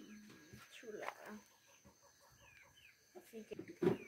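Quiet soft pats of tortilla dough being slapped between the hands, with faint short bird calls in the background and a few low murmured voices.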